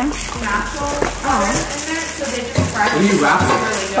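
People talking indistinctly, over light rustling and handling noise from a gift box and wrapping on a stone countertop.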